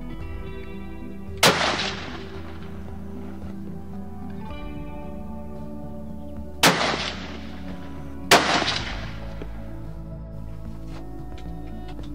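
Three rifle shots from a scoped bolt-action hunting rifle fired off a bench rest: one about a second and a half in, then two close together around six and a half and eight seconds in, each with a short ringing tail. Background music plays throughout.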